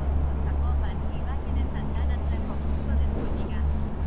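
Motorcycle engine idling with a steady low hum.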